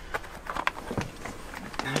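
Plastic extension cable reel being handled and its cable pulled off, giving a few light clicks and knocks.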